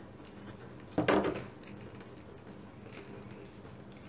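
Shoemaker's hammer knocking once against a leather seam on a cutting mat about a second in, as its edge is pushed in to open the sewn back seam. Otherwise faint room tone.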